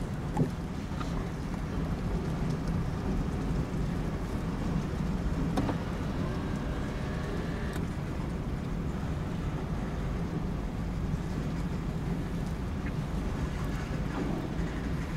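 Freight boxcars rolling slowly past in reverse, a steady low rumble of steel wheels on rail, heard from inside a car with rain on its windows.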